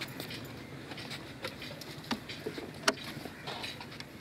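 Faint background with a few scattered sharp clicks and knocks, the loudest about three seconds in.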